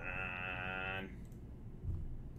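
One held, bleat-like vocal sound at a steady pitch, lasting about a second and then cutting off.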